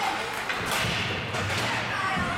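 A dull thud against the boards of an ice rink, followed by a low rumble lasting about a second.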